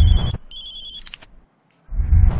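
Mobile phone ringtone for an incoming call: a trilling electronic ring of high beeping tones lasting about a second. A short low buzz sounds at its start and again near the end.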